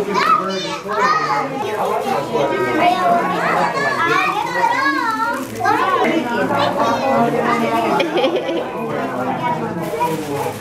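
A group of young children talking and calling out over one another in high, excited voices, with no break.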